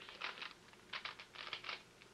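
Plastic Rubik's cube layers being twisted by hand: quick clicking and rattling in several short bursts.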